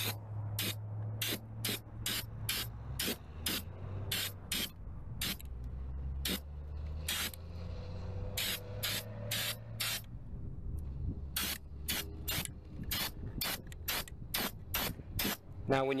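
Aerosol spray-paint can hissing in many short bursts, about two a second, with a brief pause about halfway. A steady low hum runs underneath.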